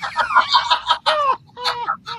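Men laughing hard at a punchline: a fast run of short, high-pitched laughs.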